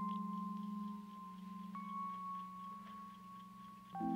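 Background score of soft, sustained chime-like tones: a low hum-like chord under a held higher note, with a new, slightly higher note entering a little under two seconds in and the chord changing again at the end.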